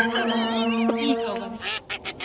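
A held, nasal, buzzy tone at one unchanging pitch, lasting about a second and a half, with warbling high chirps over its first half. It is most likely an edited-in comic sound effect.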